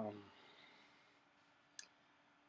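A man's short "um", then near silence with a faint steady hum. A single brief, sharp click comes near the end.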